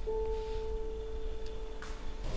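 A single pure, steady musical tone with a faint overtone above it, sounded at the start and slowly fading.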